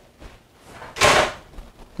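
An oven door closing once, a short closing sound about a second in.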